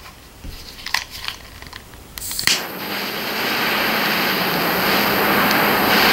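SOTO butane pocket torch clicking on about two seconds in, then burning with a steady hissing jet flame. Light handling clicks come before it lights.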